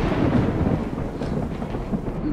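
Rustling and rumbling handling noise on the microphone, as cloth rubs close against the recording device; a steady, even noise that slowly fades.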